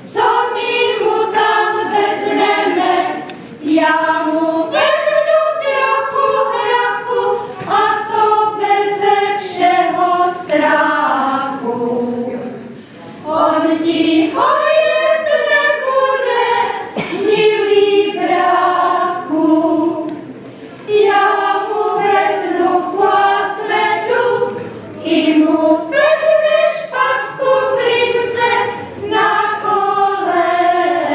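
Women's folk choir singing together in long phrases, with short breaks for breath about three and a half seconds in, near the middle, and about two-thirds of the way through.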